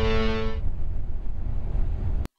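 A held guitar chord dies away about half a second in, leaving the steady low rumble of a bus travelling along a highway, heard from inside the cab.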